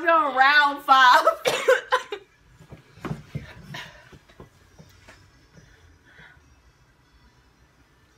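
A young woman's loud, wavering wordless vocalising for about the first two seconds, then quieter scattered knocks and handling sounds that die away.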